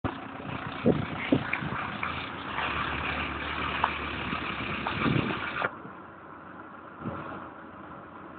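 A car engine running as the car drifts on snow, with a couple of sharp thumps about a second in; the sound drops off suddenly about two-thirds of the way through.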